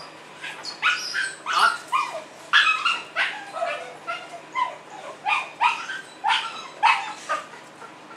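A small white Spitz puppy yapping: a quick run of short, high-pitched yips and barks, two or three a second, some of them falling in pitch, beginning about a second in.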